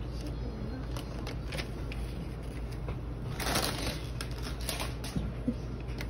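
Gift-wrapping paper crinkling and crackling as it is pulled off a box, with a louder rip of the paper a little past halfway through.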